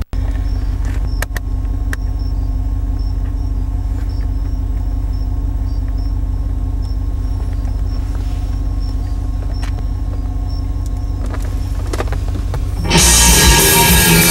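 Steady low vehicle engine rumble with a faint, even high ticking. Near the end, loud rock music with guitar and drums starts suddenly.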